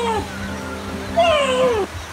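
Background music with steady held tones, over which an animal gives two falling, meow-like calls: one ending just after the start and a longer one past the middle.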